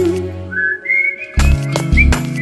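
A whistled melody in a Tamil film song: a held note fades out, then the whistling glides upward in short phrases, and the drums and bass come back in about one and a half seconds in.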